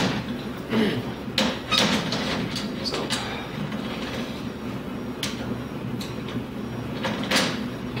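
Scattered clicks and knocks of metal parts being handled on a RealD XL 3D unit's mounting carriage and rail, over a steady low hum.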